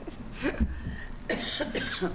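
A person coughing, two short coughs about a second apart.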